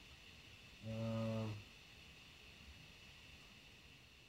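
A man's single drawn-out hesitation "um" about a second in, then quiet room tone with a faint steady hiss.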